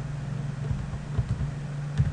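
A steady low hum with a few faint computer keyboard key clicks, the clearest near the end.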